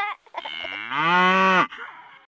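A cow mooing: one long moo that grows louder about a second in and drops in pitch as it ends.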